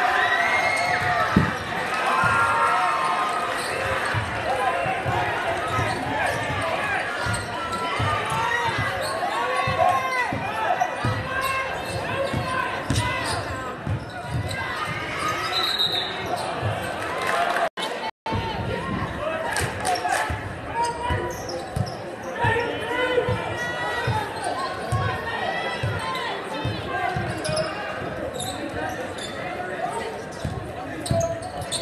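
A basketball being dribbled on a hardwood gym floor amid the chatter of a large crowd of spectators, echoing in a big gym. The sound cuts out for a moment a little past halfway.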